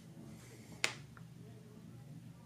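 A tiny glass bottle clicking once, sharply, against the cutting mat as it is handled, with a fainter tick just after.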